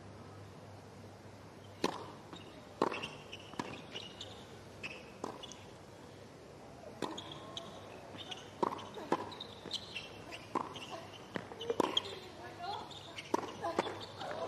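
Tennis balls being hit by rackets and bouncing on a hard court during a doubles rally: a dozen or so sharp pops at irregular intervals, quiet against a low steady hum.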